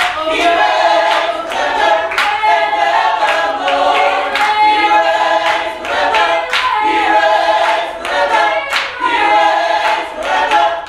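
Small mixed vocal group singing a gospel praise song a cappella, voices in harmony, with hand claps along.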